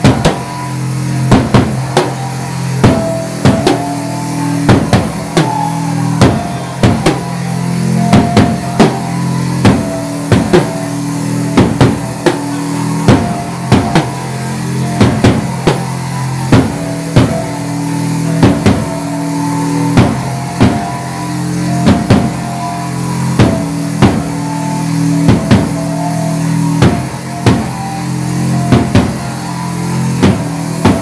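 Live rock band playing loud: a drum kit keeps a steady pounding beat under sustained low bass and guitar notes.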